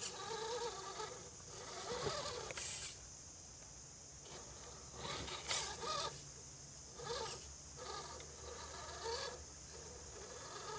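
Redcat Gen 8 RC rock crawler's electric motor and geared drivetrain whining in several short throttle bursts, the pitch rising and falling with each burst as it crawls over rock.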